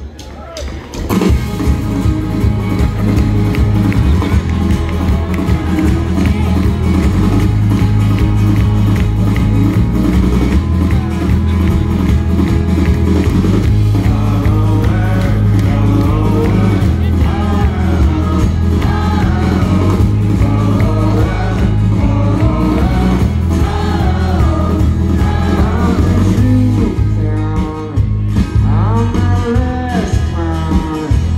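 Live band of acoustic and electric guitars, bass and drums playing loud full-band music, kicking in about a second in after a brief quieter moment. Recorded from within the audience.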